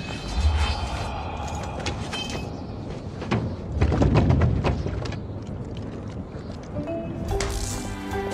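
Film sound effects: scattered small clicks and clatters of debris settling after a crash, over a low rumble, with music of sustained tones coming in near the end.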